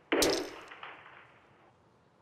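A metal-headed hammer strikes a walnut on a wooden floor: one sharp crack with a brief metallic ring, then a second, lighter hit a little under a second later.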